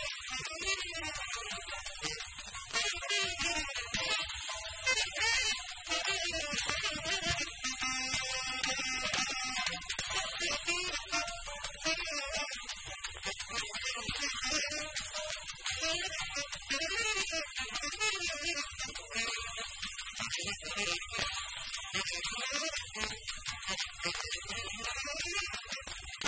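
Acoustic jazz quartet playing: tenor saxophone, piano, double bass and drums, running on without a break.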